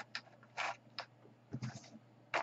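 Small handling noises on a tabletop: a few short scrapes and taps as paper and a card are moved about.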